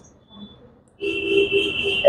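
A steady electronic tone, high and unwavering, that comes in about a second in and holds for about a second, after a near-silent pause.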